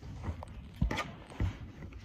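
A few soft thumps and light handling noise from a child's hands and a lump of clay against a tabletop: two low knocks about half a second apart with a small click between them.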